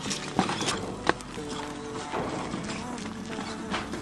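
Background music, with two sharp metallic knocks in the first second or so from a metal wheelbarrow being pushed.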